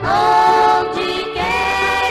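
A women's vocal group singing a gospel hymn in harmony, with two long held notes that each begin with a quick slide up into pitch: one at the start and one about a second and a half in.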